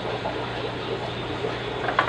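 Fish room ambience: a steady low hum under a constant hiss of bubbling water from the aquarium air pumps and sponge filters.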